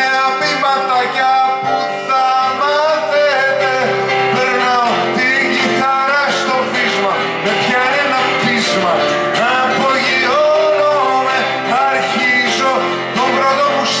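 Live song: a man singing in Greek to his own acoustic guitar, with a keyboard holding sustained chords underneath.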